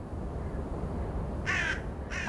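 A steady low rumble, with one short harsh bird-like call about one and a half seconds in.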